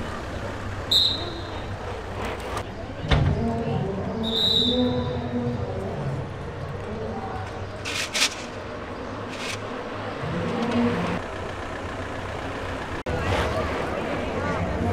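Outdoor street ambience with the distant murmur of spectators' voices over a steady low rumble. Two short high-pitched tones come about a second in and again near four and a half seconds, and a few brief sharp noises follow around the middle. The background changes abruptly near the end.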